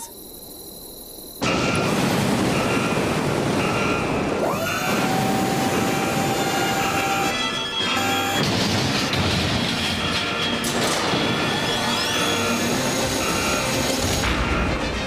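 Cartoon action soundtrack: after a quiet second and a half, music starts together with heavy mechanical sound effects of machinery moving. The effects include a rising whine that settles into a steady hum, and another rising sweep near the end.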